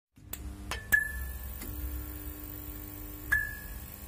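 Logo intro sound design: a low steady hum broken by a few sharp clicks, with a short high ping about a second in and another near the end, and a steady mid tone held in between.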